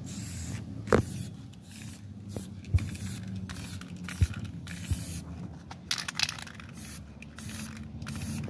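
Aerosol spray can sprayed in quick short bursts, two or three hisses a second with a longer hiss about six seconds in. A few dull thumps stand out among the hisses.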